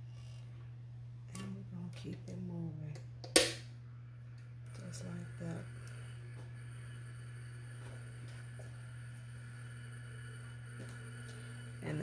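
Electric tumbler spinner running with a steady low hum as it turns a resin-coated tumbler, with a sharp click about three and a half seconds in. A low, indistinct voice is heard briefly before and just after the click.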